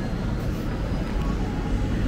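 Steady low rumble and hiss of supermarket room noise, with no distinct events.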